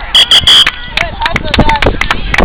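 A whistle blown in three short, loud blasts in quick succession, stopping play in a children's soccer game, followed by children's voices.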